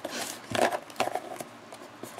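Small cardboard shipping box being handled and turned over on a desk: a few short scrapes and knocks of cardboard, the loudest about half a second in.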